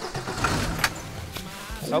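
Van engine idling steadily just after being started, with a couple of light clicks about a second in.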